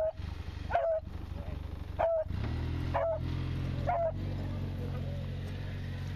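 Beagle barking in short single barks, about one a second, four times. From about two seconds in, a steady low engine hum runs underneath.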